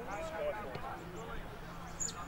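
Indistinct calling and shouting from players and spectators during open play in an Australian rules football match, over steady outdoor background noise.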